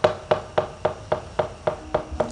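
A quick, slightly uneven run of sharp percussion strikes, about five a second, each with a short hollow ring, like the drum or knock pattern of a gamelan accompaniment.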